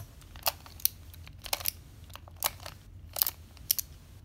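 A plastic skewb puzzle being turned through the sledgehammer sequence (R' F R F'): a series of sharp clicks and clacks as its corner halves snap through each quarter-turn, spaced irregularly about half a second to a second apart.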